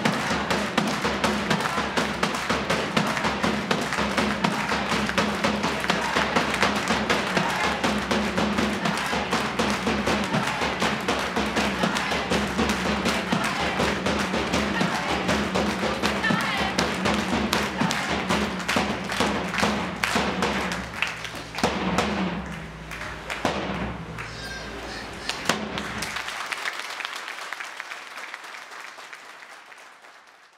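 A hand-held drum beaten in a fast, steady rhythm, with hand claps and group chanting. The beat thins out after about twenty seconds and the sound fades away near the end.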